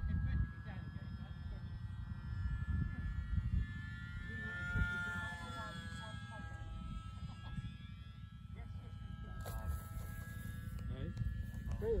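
Wind buffeting the microphone in uneven gusts, with a faint, steady, high-pitched whine running underneath.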